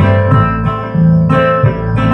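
Two acoustic guitars strumming an old-time country tune over a bass line, with no singing. The bass notes change about twice a second.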